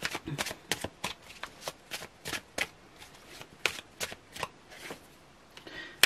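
A tarot deck being shuffled by hand: a run of quick, sharp card snaps and taps, about four a second, that thins out towards the end, just before a card is laid onto the spread.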